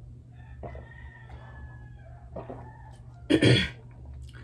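Quiet swallowing of water from a plastic cup, then one loud, sharp cough near the end.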